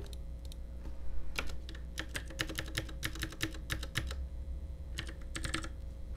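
Computer keyboard typing: a run of separate keystrokes starting about a second in and coming fastest near the end, as a long decimal number full of zeros is keyed into a table cell.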